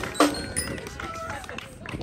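Indistinct voices talking, with a brief sharp sound just after the start; the band's music has stopped.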